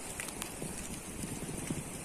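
Vegetation burning at the front of an a'a lava flow: irregular crackling over a steady rushing hiss.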